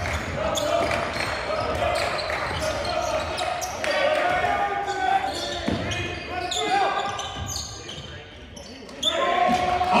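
Live basketball game sound in a gym: players and spectators calling out over the ball bouncing on the hardwood court, all echoing in the hall. The voices get louder near the end.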